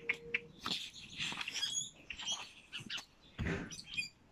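Small birds chirping in short high calls, over the crinkly rustle of a picture book's paper page being turned.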